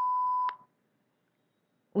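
A steady electronic beep at one pitch, the end of a longer tone, cutting off sharply about half a second in. It is the cue tone that closes a dialogue segment in interpreting practice, the signal to start interpreting.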